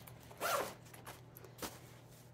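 Zipper on a fabric fly-fishing vest pocket pulled once, a short rasp rising in pitch about half a second in, followed by a faint click later.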